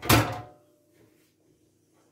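A dark metal baking tray is set down on the stovetop with a single clattering knock that rings briefly and dies away within half a second.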